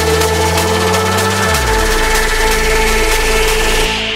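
Electronic dance music from a DJ set, with a steady hi-hat pattern over held bass notes. About a second and a half in, the bass slides down in pitch. Right at the end the high end is suddenly cut away, as by a DJ filter.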